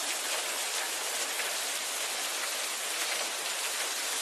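Steady rain falling: an even, unbroken hiss of drops.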